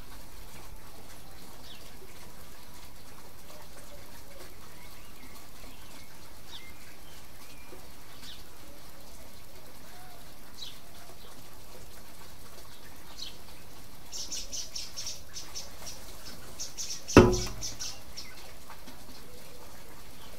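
Birds chirping now and then, with two spells of quick repeated chirping in the later part, over a steady background hiss. A single sharp knock about 17 seconds in is the loudest sound.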